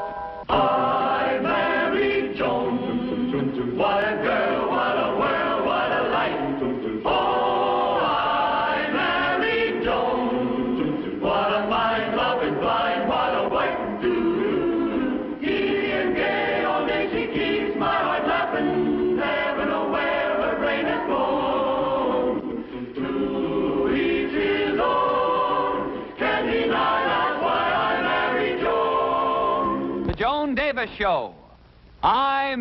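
A choir singing a television show's opening theme song.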